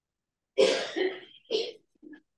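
A person coughing and clearing their throat: a long harsh bout starting about half a second in, then a shorter one about a second later.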